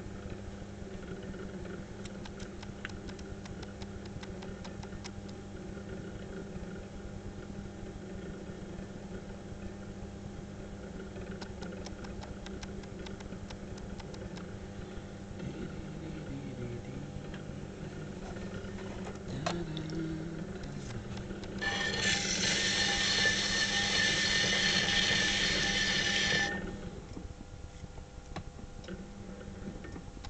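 Electric potter's wheel motor running with a steady low hum and faint scattered ticks. About 22 seconds in, a much louder whirring with a steady high whine comes in for about four and a half seconds, then cuts off sharply and the hum falls away.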